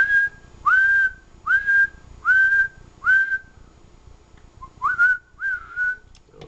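A person whistling a series of short notes, each swooping up and then held briefly: five in a row, a pause, then two more near the end. The whistle is the audio that drives the transceiver's single-sideband transmitter to full output, in place of a tone generator.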